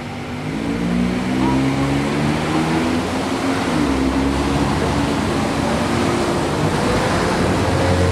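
Road traffic passing close by at low speed: the engines and tyres of cars and small vans going past, a continuous noise with engine notes that rise and fall gently as the vehicles go by.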